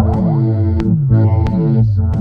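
Techno-style electronic track at 90 BPM: a kick drum with a falling-pitch bass note about every two-thirds of a second under a sustained synthesizer chord.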